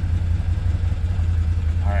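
Can-Am Defender's V-twin engine idling steadily at about 1,250 rpm, a constant low drone.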